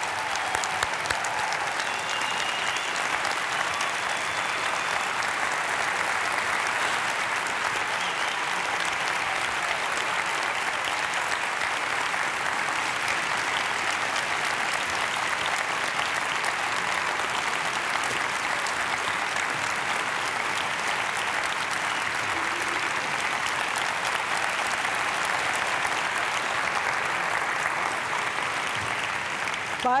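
Large audience applauding steadily: a standing ovation that runs throughout and begins to fade near the end.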